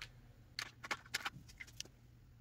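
Hands working at a tabletop with paper bills and a felt-tip marker: a handful of short, light clicks and rustles, coming from about half a second in until near the end.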